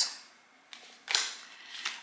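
Tarot cards being handled: a faint click, then a sharper papery snap of card stock about a second in that trails off.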